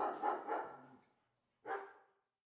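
A person laughing "ha, ha" in quick bursts that trail off within the first second. Near the end comes a single short bark-like call.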